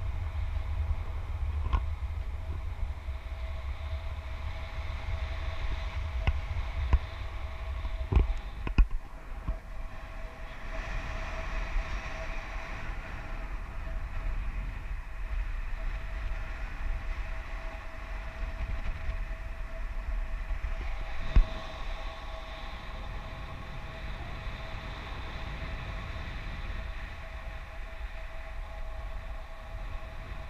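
Airflow buffeting the camera's microphone in paragliding flight: a steady low rumble with a constant faint high tone running through it. A few sharp knocks stand out, two about eight seconds in and one about two-thirds of the way through.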